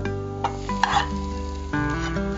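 Background music of sustained notes that change in steps, with a short burst of sizzle and clatter about a second in as chopped cluster beans are tipped from a steel bowl into a hot pan of lentil usili, and a few light spoon-on-pan clicks.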